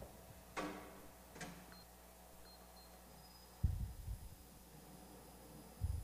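Prática spiral dough mixer kneading bread dough towards the windowpane stage: a faint steady motor hum, with two groups of heavy low thuds from the dough knocking in the bowl in the second half. Two short ringing clinks come in the first two seconds.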